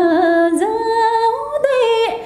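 A woman singing unaccompanied, holding long notes; the pitch steps up about half a second in and again about a second and a half in, and the phrase trails off at the very end.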